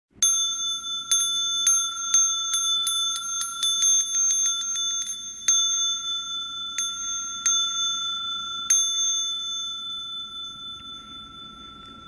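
Small Buddhist bowl bell struck repeatedly to open the sutra chanting: spaced strikes that speed up into a quick roll about three to five seconds in, then a few slower single strikes, the last about nine seconds in, left to ring out and fade.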